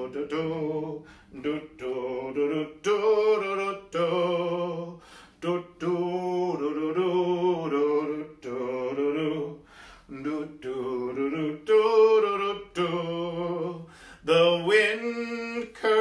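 A man singing a tune on wordless syllables ('do-do, da-da'), in short phrases with brief pauses for breath.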